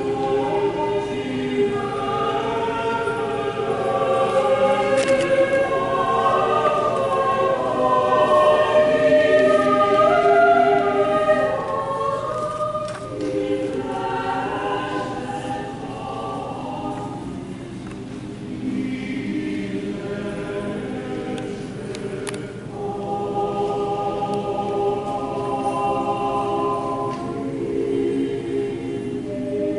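A congregation singing a hymn together in long held notes, phrase after phrase, with brief breaks between lines.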